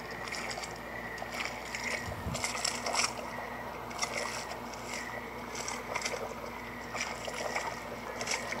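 Quiet sloshing and splashing of a thick liquid: oil being stirred as a figure crawls out of it. A faint steady hum sits under it.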